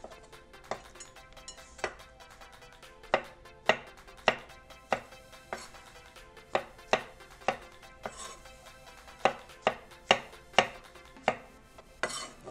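Kitchen knife slicing baby bella mushrooms on a wooden cutting board: irregular sharp knocks of the blade meeting the board, roughly one or two a second.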